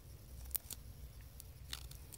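Faint handling noise of fingers pressing and adjusting the taped halves of a plastic Apple IIgs case latch: a few small clicks and crinkles of masking tape and plastic, over a low steady hum.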